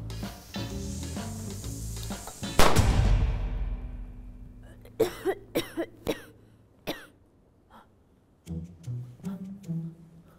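A loud bang from a staged chemistry-experiment blast about two and a half seconds in, fading away over about two seconds. A young woman then coughs several times in quick succession from the smoke.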